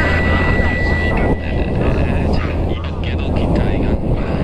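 A rock song ends about a second in and gives way to the onboard sound of an FPV flying wing in low, fast flight: wind rushing over the camera's microphone with the electric motor and propeller running.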